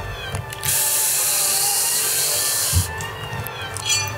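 A steady hiss of noise lasting about two seconds, switching on and off abruptly, as a sound effect opening a dance routine's music track. A short rising sweep follows near the end.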